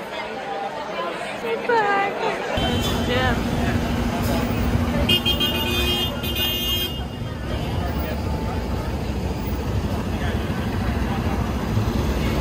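City street traffic with a dense, steady low rumble, and a vehicle horn sounding for about two seconds near the middle. The first couple of seconds hold voices chattering before the street sound cuts in.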